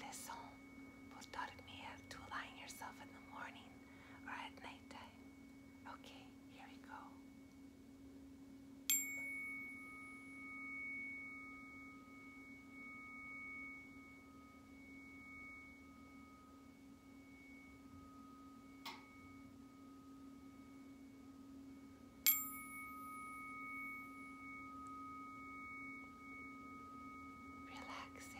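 Tuning forks struck and left to ring. A high pure tone is already sounding at the start. A sharp strike about nine seconds in sets two long, steady tones ringing, one higher than the other, and a second strike about twenty-two seconds in renews both. A low steady hum runs underneath.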